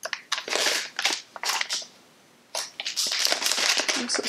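Packaging crinkling in short bursts as it is handled and unwrapped, pausing briefly about two seconds in, then crinkling more continuously.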